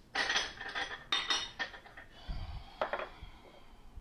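Kitchen clatter of dishes and utensils handled on a countertop: two clinking, scraping bursts with a faint ring in the first second and a half, then a soft low thump and a short click.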